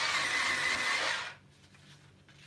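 Battery-powered electric eraser whirring against the paper for about a second and a half, then stopping: part of the pencil drawing being rubbed out for correction.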